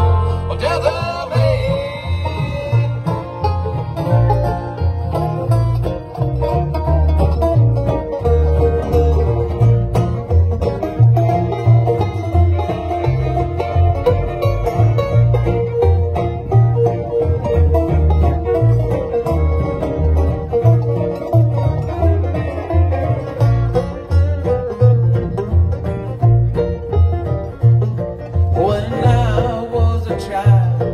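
Live bluegrass band playing an instrumental passage: banjo and acoustic guitar over a steady pulsing bass line, with no vocals.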